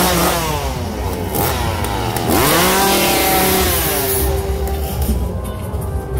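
A chainsaw revved hard twice, its pitch sweeping up and back down: briefly near the start, then louder and longer about two seconds in. A droning music track plays underneath.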